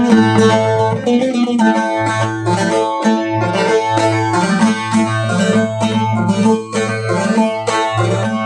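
A bağlama (long-necked Turkish saz) played solo: quick plucked notes ring over a low sustained note, as the instrumental introduction to a folk song.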